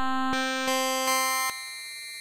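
Steinberg Padshop 2 granular synthesizer playing a run of buzzy notes, retriggered about every 0.4 s. The pitch stays the same while the brighter overtones change from note to note, because the grain duration key follow is set to 0%. The notes stop about one and a half seconds in and a short tail fades out.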